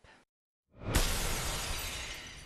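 Crashing, smashing sound effect: a short swell, then a sharp crash just before a second in that fades out slowly.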